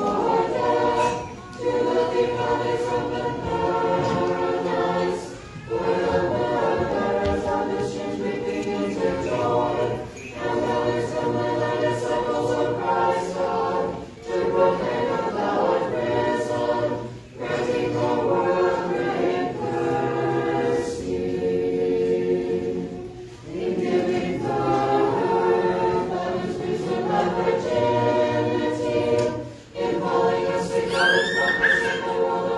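Unaccompanied Orthodox church choir singing liturgical chant in several parts. It goes in sustained phrases broken by brief breaths every few seconds.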